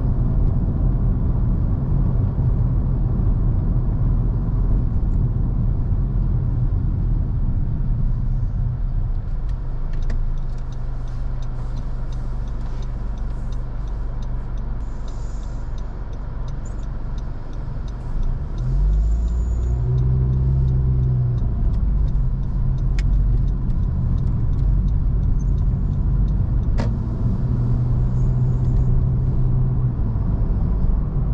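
Car in motion, heard from inside: a steady low rumble of engine and tyres on the road. The rumble eases for several seconds while the car is stopped at a light. Just past halfway an engine revs up as the car pulls away, then the steady road rumble returns.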